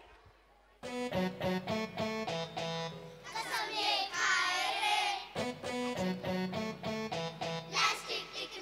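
A live band begins a song's instrumental intro about a second in: a steady rhythm of short pitched notes over a bass line, with voices briefly in the middle.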